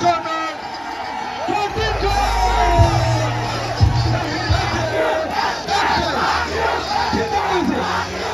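A large crowd cheering and shouting, many voices at once, over music with a deep bass that is strongest from about two to five seconds in.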